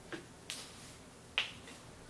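A faint tick, then two sharp clicks about a second apart, over quiet room tone.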